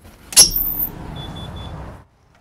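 An office door unlatching with a sharp clunk about half a second in, then steady outdoor traffic noise with three short, faint high beeps.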